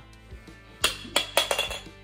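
A small die rolled onto a wood-look floor, clattering in a quick run of about five knocks in the second half, over steady background music.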